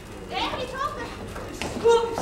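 Several high-pitched voices shouting short calls during a wrestling match, with a louder held shout near the end.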